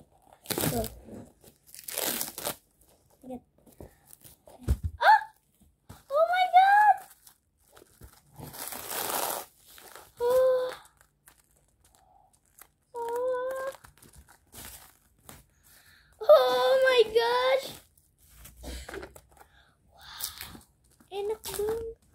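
Plastic wrap on a macaron box crinkling and tearing in a few short bursts as it is pulled off, between a child's short exclamations.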